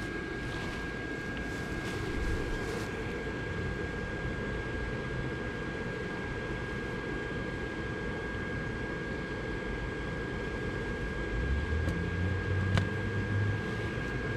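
Electric blower fan of an inflatable lawn decoration running steadily: a low rush of air with a thin, steady whine above it, and a few low bumps near the end.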